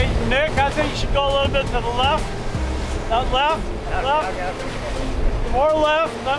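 Men's voices talking and laughing over the steady low rush of a boat running at speed, with engine, water and wind noise underneath.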